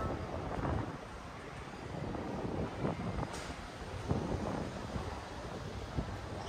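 Wind buffeting the microphone, an uneven low rumble over faint open-air street ambience.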